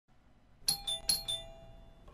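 A short chime jingle: four bell-like notes alternating high and low, ding-dong twice in quick succession, each ringing on and fading.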